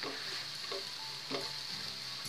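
Grated onion and ground spices sizzling in hot oil in a nonstick frying pan, stirred with a wooden spatula that scrapes faintly a few times. The masala is being roasted (bhuna) in the oil.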